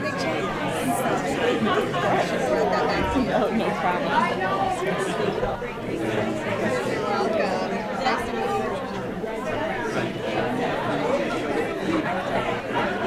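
Many people talking at once: a steady, overlapping crowd chatter in a large hall, with no single voice standing out.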